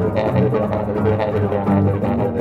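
Semi-hollow electric bass played fingerstyle, moving through low notes, together with trombone in a bass-and-trombone duo.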